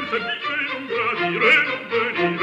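Baroque opera music: a singing voice over a string orchestra, with a wavering, vibrato-laden vocal line.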